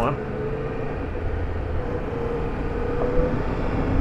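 Triumph Tiger 1200 Rally Pro's three-cylinder engine running steadily as the bike picks its way slowly through ruts on a dirt trail, with wind and tyre noise on the onboard microphone; the sound grows slightly louder toward the end.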